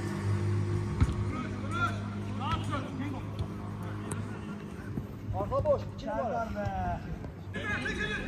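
Players' shouts and calls carrying across a five-a-side football pitch, in two short spells, over a steady low hum, with a single thud about a second in.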